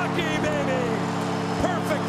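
Arena goal horn blaring one steady chord over a loudly cheering crowd with whistles: the signal of a home-team goal.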